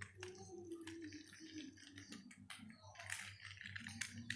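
Faint, irregular clicking and rattling of small plastic toys being handled and pushed, with a low hum underneath.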